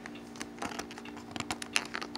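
Fingers handling and picking at a cardboard advent calendar: light, irregular small clicks and scratches, over a faint steady hum.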